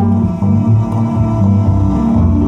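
Cello and upright bass playing an instrumental passage live, carried by a low line of changing bass notes.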